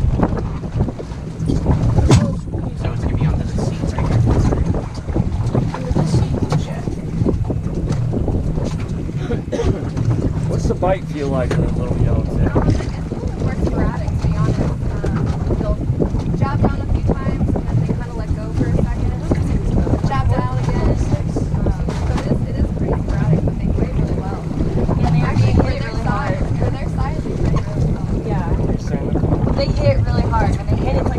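Steady wind noise buffeting the microphone aboard a small open fishing boat at sea, a continuous low rumble, with faint voices now and then.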